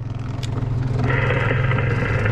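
Boat motor running steadily under way, a low even engine hum; about a second in, a steady hiss joins it.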